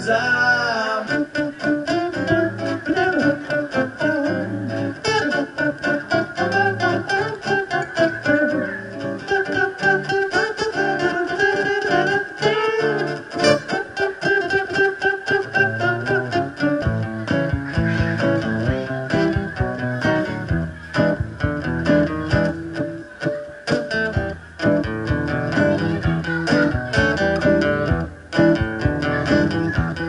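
Acoustic guitar strummed in a quick, steady rhythm, played as an instrumental passage of a song.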